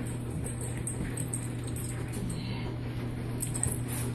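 A dog and a barefoot person running on carpet: soft padding and scuffling, with light metallic jingling near the start and again near the end, over a steady low hum.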